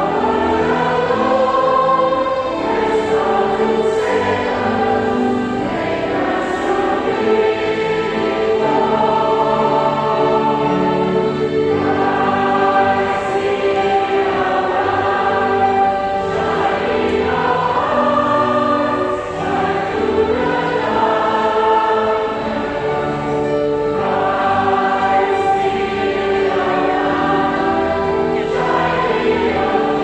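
A choir singing in several parts, with long held notes.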